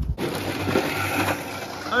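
Indistinct voices of people talking in the background over a steady, noisy hiss.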